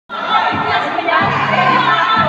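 Dance-class music with a beat, with a group of people shouting and cheering loudly over it.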